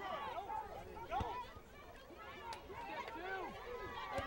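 Faint, overlapping voices of spectators and players calling out across an open field, with a couple of brief knocks about a second and two and a half seconds in.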